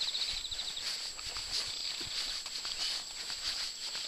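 Footsteps of a person walking along a lane, soft and fairly regular, over a steady high-pitched background hiss.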